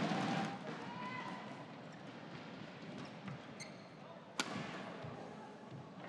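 Faint arena crowd murmur, with a single sharp racket strike on a shuttlecock about four and a half seconds in.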